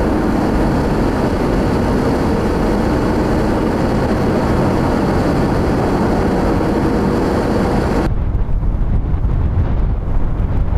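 Steady road and wind noise heard from inside a car driving on a snow-covered highway in strong wind. About eight seconds in it cuts to gusting wind buffeting the microphone, a low rumble with the hiss gone.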